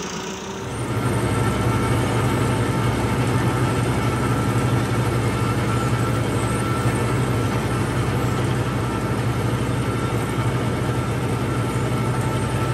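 Tractor engine under load driving a super seeder, a PTO-driven rotary tiller and seed drill, as it chops and buries rice stubble while sowing. A steady heavy drone with a constant higher whine, getting louder about a second in and then holding even.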